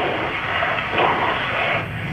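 Steady hiss of phone-line noise from a recorded emergency call, played back over room speakers, with no clear words.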